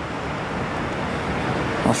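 Steady outdoor background noise: an even low rumble and hiss with no distinct events.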